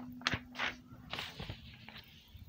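Sheets of lined notebook paper being handled and shuffled, giving a few short papery rustles, with a faint steady low hum under the first half.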